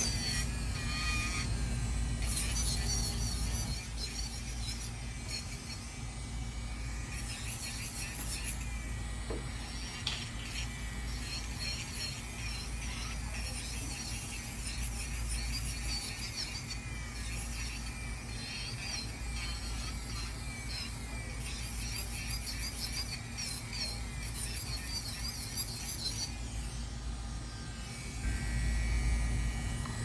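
Electric nail drill running steadily as its bit grinds an acrylic nail, a continuous whine with the pitch wavering slightly, over background music.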